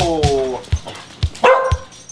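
Dogs at rough play: a drawn-out yelp that falls in pitch over the first half second, then a short, harsher bark about one and a half seconds in.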